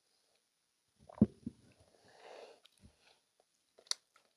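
Close-miked swallowing of a mouthful of drink: a loud gulp about a second in, a smaller second swallow, then a breath out. A soft knock and a sharp click follow near the end.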